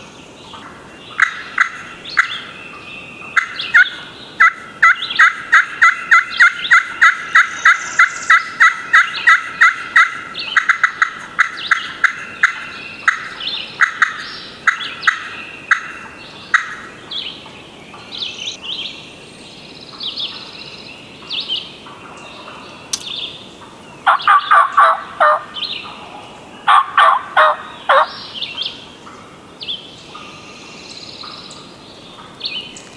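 Wild turkeys calling: a long, fast run of loud, sharp notes, about three a second, carries on for over fifteen seconds. Two rattling gobbles from a gobbler follow a few seconds apart near the end.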